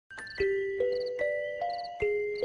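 Intro theme music: a chiming, bell-like melody of four rising notes, one about every 0.4 s, each note ringing on, with a faint high tinkle over each.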